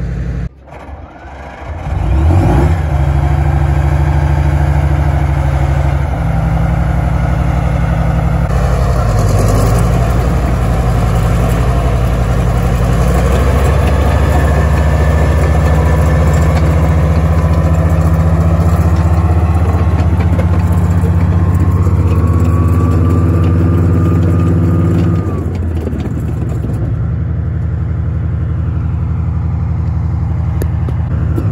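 Type 74 tank's diesel engine running as the tank drives on its tracks, a loud steady low drone that starts in earnest about two seconds in after a brief dip. A higher whine rises slightly before the sound eases off a little near the end.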